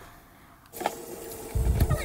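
Quiet at first, then a kitchen tap running, with water splashing onto fish in a plastic colander in a stainless steel sink. A couple of dull knocks come near the end.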